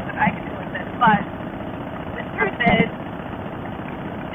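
Steady running noise of a Harley-Davidson Fatboy's V-twin at road speed, mixed with wind on the microphone. Over it come a few short, loud, muffled bursts of the rider's voice, the loudest a little past the middle.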